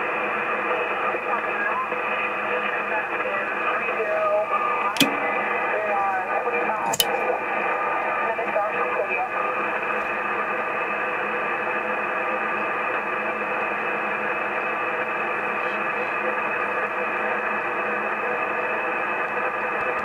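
Drake R8 shortwave receiver playing a 5.696 MHz HF voice channel with no one transmitting: a steady hiss of static, narrow and muffled, with two sharp static clicks about five and seven seconds in.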